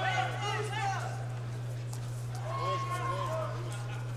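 Faint speech in the background over a steady low hum, much quieter than the nearby talk.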